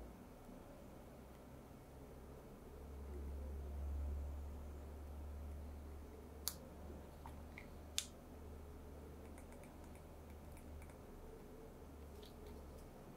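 Quiet room with a low hum that swells and fades. Past the middle come two sharp clicks about a second and a half apart, followed by a few faint ticks.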